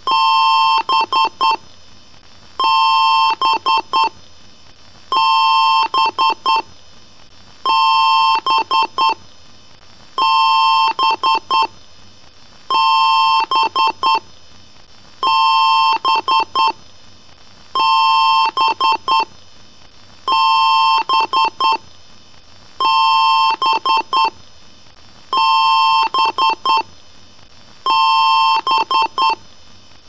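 Computer BIOS beeps in a PC-speaker style: a steady high beep about a second long followed by a few quick short beeps, the same pattern repeating about every two and a half seconds.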